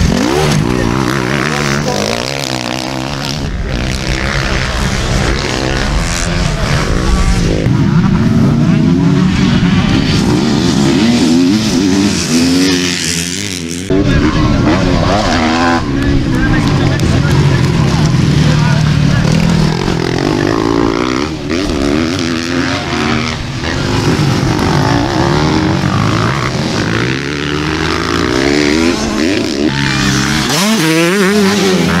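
Motocross bike engines revving hard, rising and falling in pitch as the bikes accelerate over a jump and pass by. The sound breaks off sharply about halfway through and carries on.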